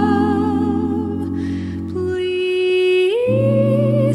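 A Swedish a cappella vocal quintet sings slow, sustained close-harmony chords with a deep bass voice underneath, played back from a reel-to-reel tape. About two seconds in the bass drops out, leaving the upper voices holding alone. Near three seconds the voices slide up together into a new chord and the bass comes back in.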